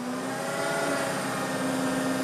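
Hook-lift truck's engine and hydraulic pump running as the hydraulic arm lowers the container onto the truck bed: a steady, pitched drone.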